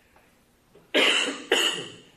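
A person coughs twice, sharply, about half a second apart, clearing the throat.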